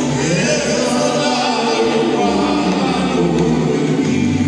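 Live gospel singing: a group of voices singing together in chorus over a steady low note.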